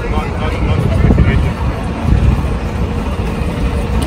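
Street traffic with a double-decker tour bus's engine running close by as it passes, a steady low rumble, with passers-by talking.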